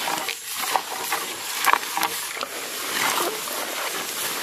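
Dense grass and leaves rustling and crackling as a bamboo pole is jabbed again and again into thick undergrowth, with irregular short snaps and scuffs.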